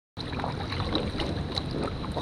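Wind rumbling on the microphone over light water splashes from a kayak being paddled, with a thin steady high tone underneath; the sound cuts in suddenly just after the start.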